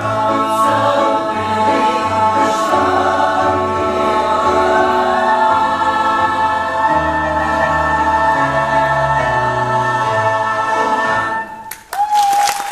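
Large ensemble of stage singers finishing a Broadway show tune, ending on one long held chord that cuts off shortly before the end.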